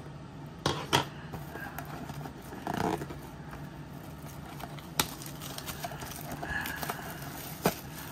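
Plastic shrink-wrap crinkling and crackling as fingers tear and peel it off a cardboard trading-card blaster box, with a few sharp crackles scattered through.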